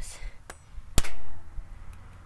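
A kitchen knife jabbed into an HP laptop's lid: one sharp clang about a second in that rings briefly, after a lighter tap about half a second in.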